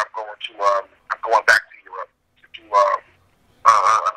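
Speech only: a man talking over a telephone line in short phrases.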